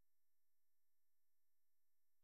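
Near silence: a digital gap between narration with no audible sound.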